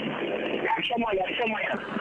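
A man's voice commentating on a football match, in narrow-band, radio-like broadcast sound.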